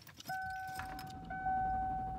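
A car's steady electronic warning tone, broken once about a second in, with keys jangling and a low rumble underneath as the car is being started in the cold.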